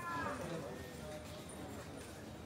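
Indistinct chatter of people talking nearby, with one higher voice held briefly that trails off just after the start.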